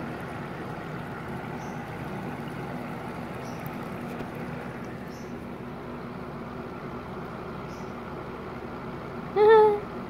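Steady low background hum and hiss, with a few faint high ticks; about nine and a half seconds in, one short, high-pitched voiced sound.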